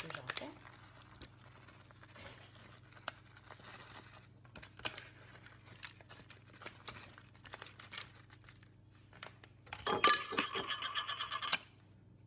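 Plastic bag of grated Parmesan crinkling and rustling as it is handled and shaken out, with scattered small ticks. Near the end comes a loud, fast rasping rattle lasting about a second and a half.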